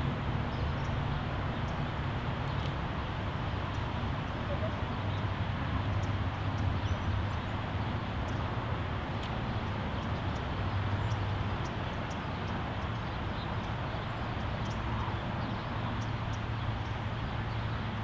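Steady outdoor background noise with a low hum of distant road traffic.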